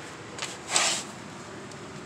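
Phone handling noise as the camera is swung around: a short faint rustle about half a second in, then a louder scraping rustle just under a second in, over a steady low hiss.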